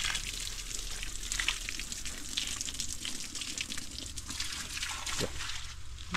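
Running water trickling and splashing steadily, with many small splashes through it.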